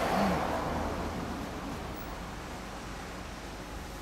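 A car passing on the road, loudest at the start and fading away over the next second or two into a steady low traffic hum.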